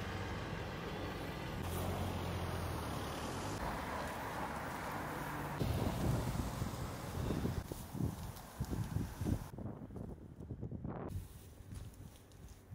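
Road traffic on a town street: a steady engine hum from passing vehicles in the first few seconds, then a car driving past, and quieter street ambience near the end.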